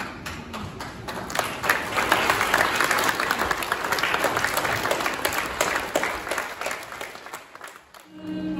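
Theatre audience applauding. The clapping builds over the first two seconds and fades out near the end.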